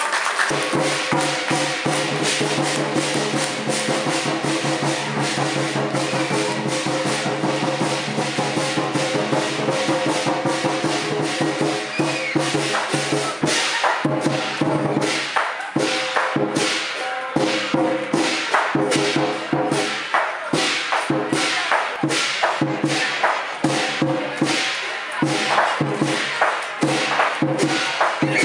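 Chinese lion dance percussion: drum, cymbals and gong struck in a fast, dense rhythm, with a steady metallic ring sustained beneath the strikes; the beats become more spaced and distinct about halfway through.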